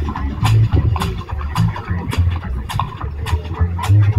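Live bluegrass band playing an instrumental stretch through PA speakers, with a moving bass line under a steady beat of about three strokes a second.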